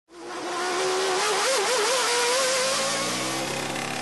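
A racing engine running at high revs, fading in quickly. Its pitch climbs and wavers about a second and a half in, then holds, with a lower note falling away near the end.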